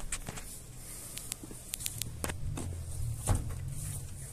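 Mercedes-Benz L1620 truck's turbodiesel engine idling as a low, steady hum that grows a little stronger partway through, with scattered light clicks.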